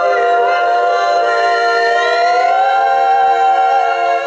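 Women's barbershop quartet singing a cappella in close four-part harmony, holding sustained chords with a pitch slide upward about halfway through.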